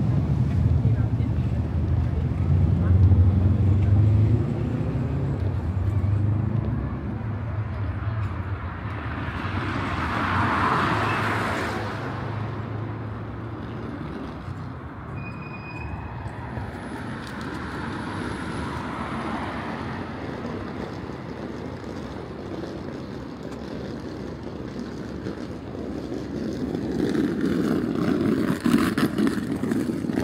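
City street traffic: a low engine rumble through the first dozen seconds, and a vehicle passing about ten seconds in, with another swell of traffic noise near the end.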